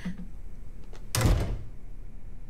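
A door shutting once with a solid thud about a second in, just after a couple of faint clicks.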